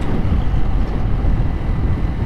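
Wind buffeting an action camera's microphone on a moving motorcycle, a loud steady low rumble with the bike's engine and road noise blended underneath.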